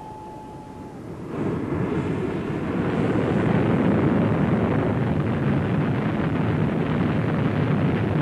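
Whittle turbojet on a test bed as its reheat (afterburner) lights, with extra fuel burning in the jet pipe. A steady high whine stops about a second in, and a loud rushing roar builds over the next two seconds, then holds steady.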